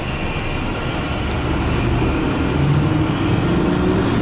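Tour bus engine and road noise heard from inside the moving bus, a steady low rumble whose engine note strengthens a little about halfway through.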